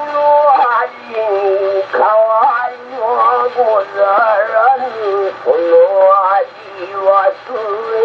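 Acoustically recorded 1912 78 rpm disc of a male rōkyoku (naniwabushi) singer chanting in a long, wavering, ornamented vocal line. It is played back through an acoustic gramophone's soundbox and horn with a cactus needle, giving a thin sound without deep bass or high treble.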